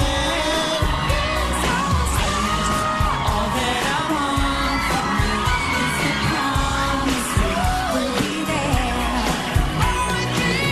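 Pop song performed live, with several voices singing over the band's backing.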